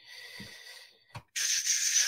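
Faint rustling, a single click, then a short airy intake of breath about halfway through, drawn just before speaking.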